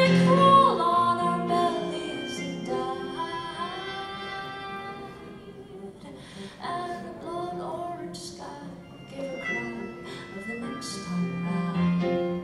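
A woman singing a slow song live, accompanied on grand piano; the music softens through the middle and swells again near the end.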